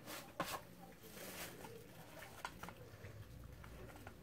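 Quiet room with a few soft clicks and rustles while a jelly bean is chewed with the mouth closed.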